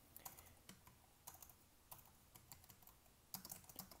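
Faint computer keyboard typing: scattered single keystrokes, coming in a quicker run near the end.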